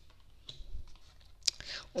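A playing-card-sized oracle card being handled and laid down on a spread of cards on a wooden table. Faint card rustles come first, then one sharp tap about one and a half seconds in as it lands.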